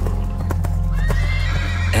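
A horse whinnying: a high, held call that starts about a second in, after a few hoof thuds, over a steady low music drone.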